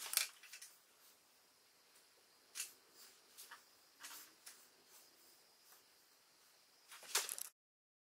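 Faint, scattered clicks and light taps of small metal hardware being handled, as a steel nut is set onto a steel pipe elbow. The sound cuts off abruptly near the end.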